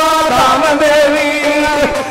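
A man singing a bait, Sufi devotional verse, in long held notes with a slight waver, amplified through a microphone.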